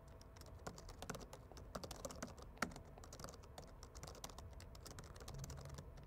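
Faint typing on a computer keyboard: a quick, irregular run of light keystroke clicks.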